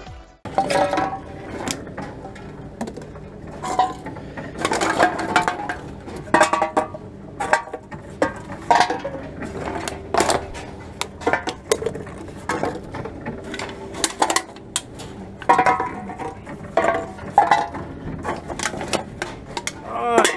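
Aluminium drink cans and plastic bottles clinking and clattering in a wire shopping trolley as they are picked out and fed into a can-and-bottle return machine: a run of irregular short knocks and clinks.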